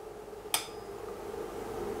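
A single sharp click of the amplifier's power switch being thrown as the Sansui G-5700 receiver is switched on, over a faint steady hum.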